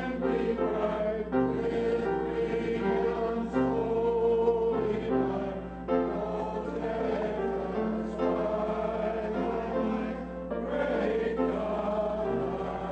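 A church congregation singing a hymn together, the voices holding each note for about half a second to a second and stepping from note to note, over a steady low hum.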